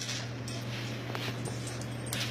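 Dogs nosing at a wooden puzzle feeder on the floor: a few faint clicks and scuffs over a steady low hum.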